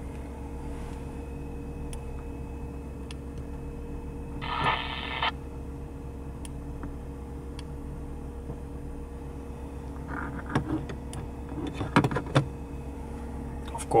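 Car engine idling steadily, heard from inside the cabin as a low hum. About four and a half seconds in there is a brief burst of sound, and near the end a few clicks and knocks.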